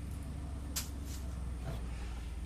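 Ford F-150's engine idling with a steady low hum, heard from inside the cab with the driver's window open, with a faint short hiss about a second in.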